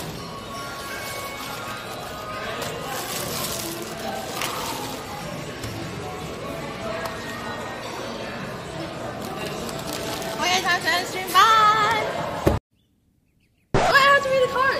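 Crinkling and rustling of a large plastic shopping bag as it is handled, over soft background music. Near the end a voice sounds briefly, then all sound cuts out for about a second.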